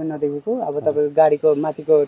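A man's voice speaking in short phrases with brief pauses.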